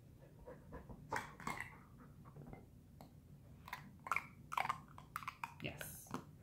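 Dog sniffing in short bursts at small metal tins on a mat, the sniffs coming closer together near the end.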